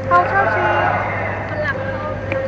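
People talking, with a steady low hum of city traffic underneath.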